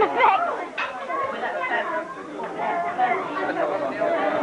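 Background chatter: several people talking at once, no words clear.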